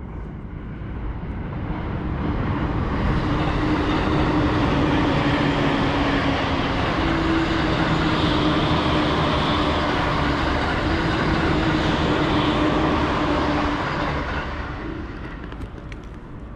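A large vehicle passing by: its noise builds over the first few seconds, holds loud with a steady low hum, then fades away near the end.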